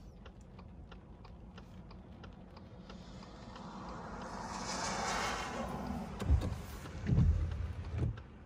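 A vehicle passing on a wet road outside the car: its tyre hiss swells and fades over about four seconds. A few dull low thumps follow near the end.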